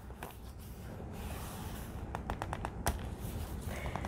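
Hands creasing a folded paper journal page: soft paper rubbing and rustling, with a quick run of small clicks a little past halfway and one more click shortly after.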